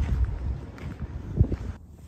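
Wind buffeting the microphone: an uneven low rumble with a couple of stronger gusts. Near the end it drops suddenly to a quieter, steady hiss.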